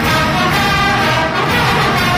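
A brass fanfare band, with sousaphones in the bass, playing loud sustained chords.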